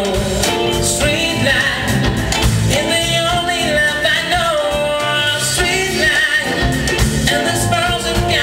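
A male vocalist singing a smooth-jazz song live, backed by a band of drums, electric bass and keyboards.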